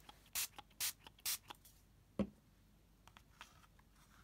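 Three quick spritzes from a pump-spray bottle of Distress Stain ink, about half a second apart, followed by a single soft knock about two seconds in.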